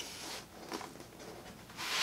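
Large printed paper booklet sheets being handled and slid against each other: a short rustle at the start, a light tap, then a louder rustle of paper starting near the end.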